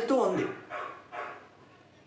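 A man's voice trailing off in one short call that falls in pitch, then two faint short sounds, and the room goes quiet.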